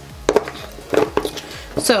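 Two short knocks of small objects being handled, about a third of a second and a second in, then the single spoken word "so" at the end.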